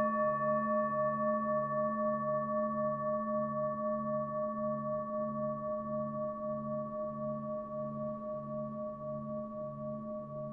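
Singing bowl tuned to A, ringing on one sustained note with a wavering pulse about twice a second, slowly fading.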